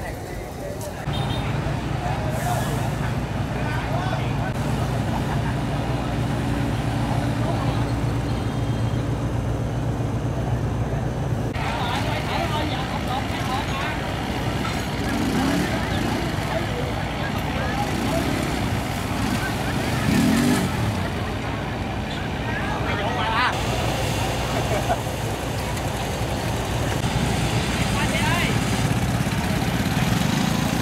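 Steady low rumble of road traffic and idling vehicle engines, with indistinct voices of bystanders talking throughout.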